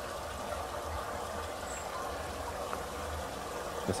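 Steady wash of trickling pool water, with a low hum under it.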